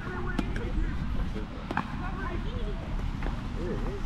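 Faint voices of onlookers over a low fluctuating rumble, with a few isolated sharp clicks or taps.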